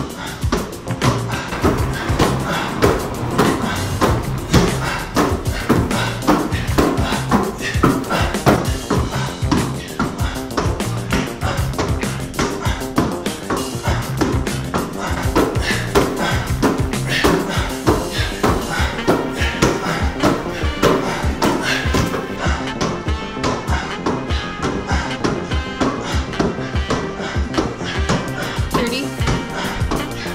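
Background music with a beat over the repeated smack of a basketball being thrown and caught in rapid succession between two players.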